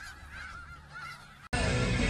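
A flock of geese honking, several calls overlapping, cut off suddenly about one and a half seconds in.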